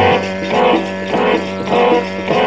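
Instrumental Sikh kirtan music with no voice: a steady low drone under a repeating melodic figure of pitched notes, about two a second.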